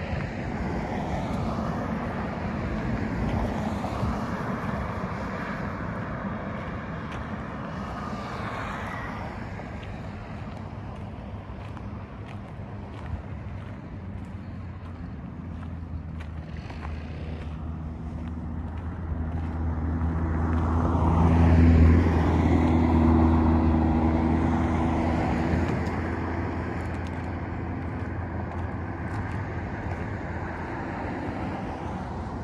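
A motor vehicle passing: its low engine hum swells over several seconds to a peak about two-thirds of the way through, then fades, over steady outdoor noise.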